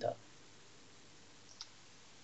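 Quiet room tone after a spoken word trails off, with one faint computer mouse click about one and a half seconds in.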